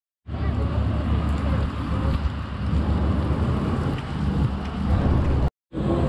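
Steady low outdoor rumble with no distinct events, cut off for a moment by an edit about five and a half seconds in.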